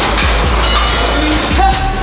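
Background music with a heavy bass and a steady beat.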